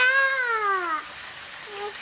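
A toddler's drawn-out, high-pitched wordless whine, about a second long, falling steadily in pitch.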